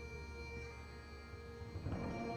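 Marching band playing a soft, sustained chord of held tones. Just before the end it swells quickly as a louder entrance begins.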